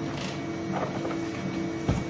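A steady low hum with soft handling noises, as printed plastic pieces are moved about in a plastic tub, and one dull thump near the end.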